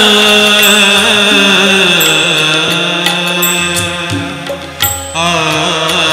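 Instrumental interlude of a Hindu devotional bhajan: harmonium holding sustained notes, with violin and keyboard melody over it and a hand drum keeping time. The music dips briefly about five seconds in, then picks up again.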